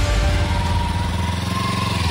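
Sport motorcycle engine running steadily at idle.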